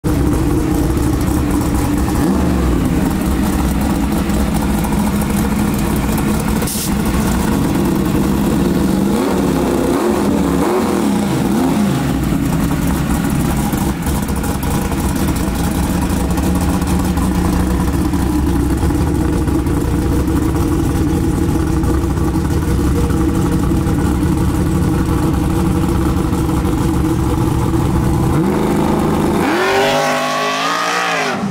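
Drag car's engine idling loudly with a rough, steady drone, blipped a few times about a third of the way in. Near the end it revs up hard in a rising sweep as the car launches.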